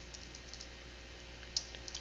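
Faint keystrokes on a computer keyboard: a few scattered clicks, one slightly louder about one and a half seconds in, over a low steady hum.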